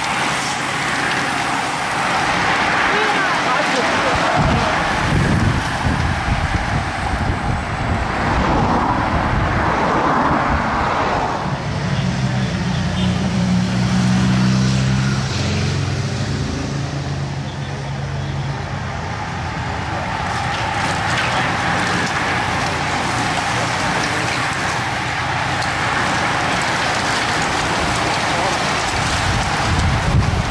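A large bunch of road-racing bicycles sweeping past: a continuous rush of tyre and wind noise, with a motor vehicle's engine droning from about twelve to nineteen seconds in.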